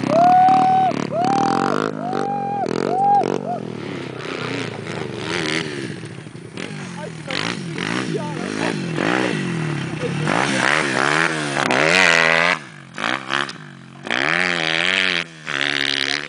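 Honda CRF50 pit bike's small single-cylinder four-stroke engine revved hard in four or five short, even bursts of throttle during a two-up wheelie. Later it gives way to an uneven, wavering mix of engine and voices.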